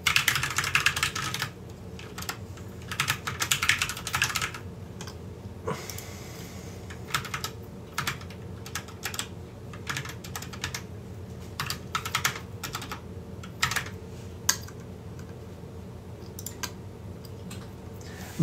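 Typing on a computer keyboard: a quick flurry of keystrokes in the first second and a half, another flurry around three to four seconds in, then scattered single keystrokes, over a steady low hum.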